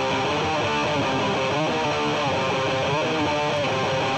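Electric guitar strumming chords on its own, the intro of a hardcore punk song, at a steady level.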